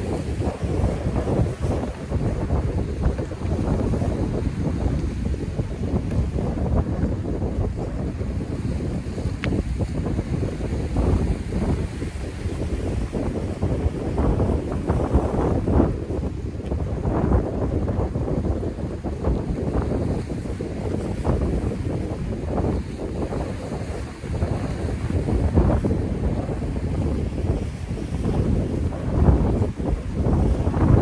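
Wind buffeting the microphone in gusts, with rough surf washing against the seawall underneath.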